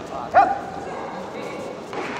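A single short, loud shout about half a second in, rising in pitch and then held briefly, over the murmur of a sports hall.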